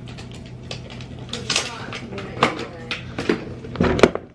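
Scattered light clicks, clinks and knocks of things being handled, such as a rolling suitcase's telescopic handle and the camera itself, with the sharpest knock near the end. A steady low hum runs underneath.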